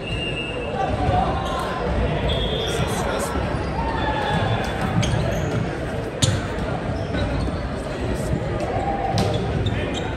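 Echoing gym ambience of an indoor volleyball game: players' voices calling and chatting over a steady hubbub, with a sharp smack of the volleyball about six seconds in.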